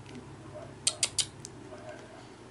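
A quick run of three sharp clicks, each about a sixth of a second apart, a little before the middle, followed by a fainter fourth.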